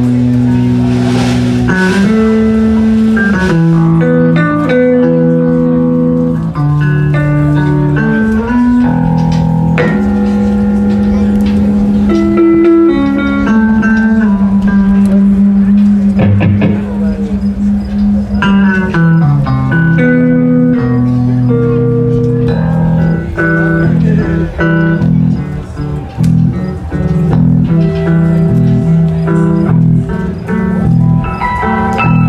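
Live band playing an old spiritual on electric guitar with drums.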